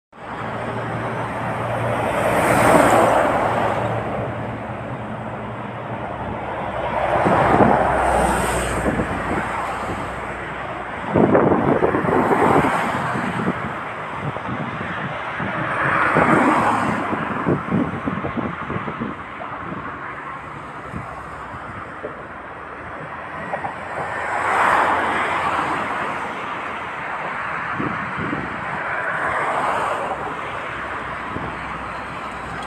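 Road traffic passing close by on a bridge: cars and trucks go by one after another, each swelling and fading over a couple of seconds, with about five loud passes. Wind buffets the microphone throughout.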